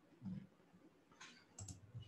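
Near silence with a few faint clicks at the computer about a second and a half in.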